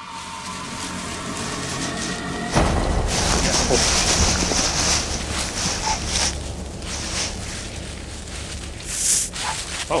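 Rustling and crashing of leafy branches and dry leaf litter as a person scrambles through jungle undergrowth, struggling with a snake. The noise builds and is loudest from about two and a half to six seconds in, with a short high rustle near the end.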